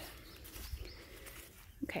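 Quiet outdoor background noise with a faint low rumble; a woman says "okay" near the end.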